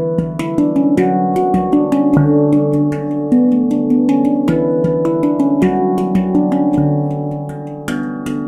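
Avalon Instruments steel handpan in D Ashakiran, played with the fingers: a quick, steady run of struck notes, several a second, each ringing on and overlapping the next over a deep bass note.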